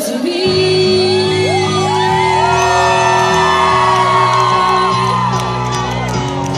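Live pop ballad: a female voice singing over electric keyboard chords, with a deep low chord coming in about half a second in and held through.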